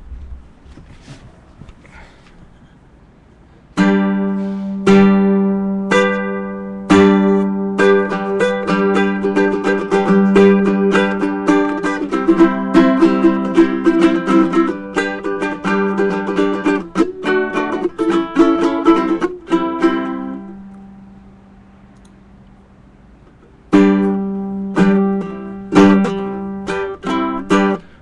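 Solo ukulele playing an instrumental intro. It begins about four seconds in with a few single strummed chords about a second apart, then quick picked melody notes that die away around twenty seconds in, then resume a few seconds before the end.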